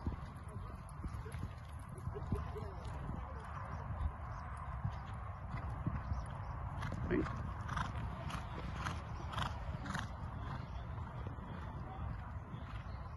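A horse cantering and jumping on a sand arena: its hoofbeats come as a regular run of short strokes, a little under two a second, through the second half, over a steady low rumble.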